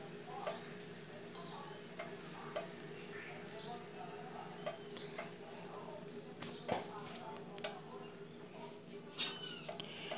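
Faint crackling of a cheese-filled tapioca cooking in a pan, with scattered light clicks and a few sharper ticks near the middle and near the end, over a steady low hum.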